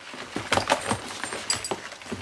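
Shoes clattering and knocking against each other, with rustling against the woven wicker basket they are piled in, as they are shifted around: a string of irregular short knocks.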